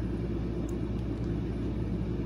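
Steady low background rumble, with one faint click about two-thirds of a second in.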